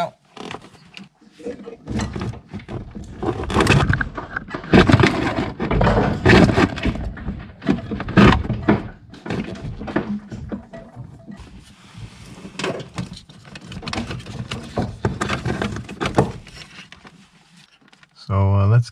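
Engine wiring harness being dragged out from under a Volvo 740's dashboard: the taped wire loom and its plugs rustle and scrape against the body and pedal brackets in irregular, uneven pulls. The pulling is busiest in the first half and then thins to a softer rasp.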